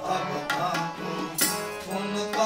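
Sikh kirtan music: a harmonium holds a steady drone while a tabla plays strokes over it.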